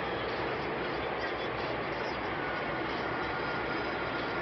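Steady motorway driving noise from a moving vehicle: tyre and wind noise at speed, with a low, uneven rumble.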